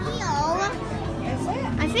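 Children's voices: a high, gliding exclamation about a quarter-second in, then more talk near the end, over a steady low hum.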